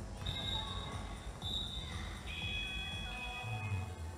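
Basketball bouncing on a wooden gym floor amid spectator chatter in a large hall. High, steady tones sound over it from just after the start, dropping to a lower pair of pitches about two seconds in and fading out near three seconds.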